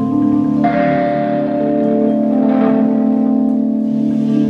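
Live instrumental music from a trio of electric keyboard, saxophone and fretless electric bass, with sustained keyboard tones ringing over the bass. A new chord is struck about half a second in and held.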